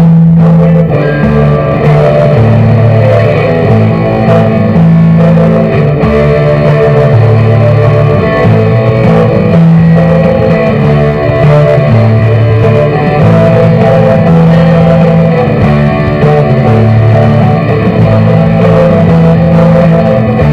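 A Stratocaster-style electric guitar plays a continuous instrumental rock passage. Low notes underneath change in a regular, repeating pattern.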